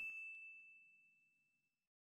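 The tail of a bright, bell-like ding sound effect, one steady high tone ringing out and fading within the first half second, then near silence.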